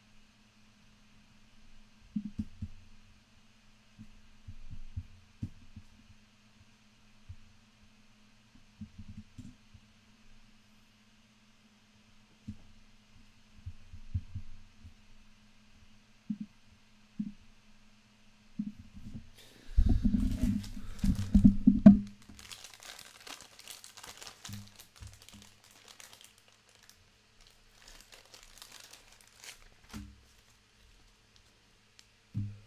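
Handling noise: scattered low knocks and bumps over a steady low hum, then about twenty seconds in a loud spell of crinkling and rustling, like plastic or paper being handled, fading out over the next few seconds.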